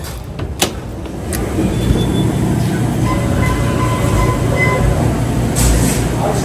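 A metal door handle and latch of a glass shop door click as the door is pulled open, then a steady low machine hum fills the shop once inside, with a few faint held tones over it and a bump near the end.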